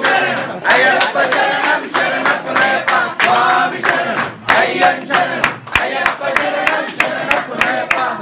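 A group of devotees singing a devotional chant together, clapping their hands in a steady rhythm.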